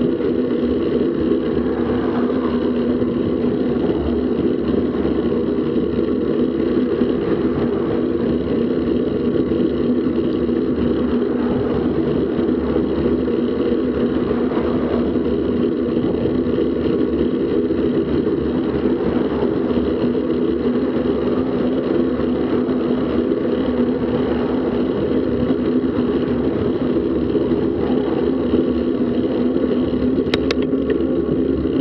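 Steady wind rush and road noise on a bicycle-mounted action camera's microphone while riding at about 28 km/h. Oncoming cars swell in faintly now and then.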